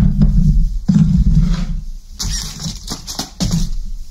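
A metal saucepan scraped and slid across a wooden table close to the microphone, a rough low rumble lasting about two seconds with a short break, then rustling and small clicks, and another short scrape near the end.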